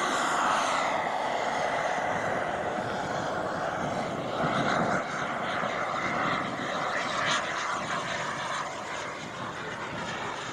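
The I-Jet Black Mamba 140 turbine of a large model jet running as the jet climbs out after takeoff. It makes a steady rushing jet noise that slowly fades as the aircraft flies away.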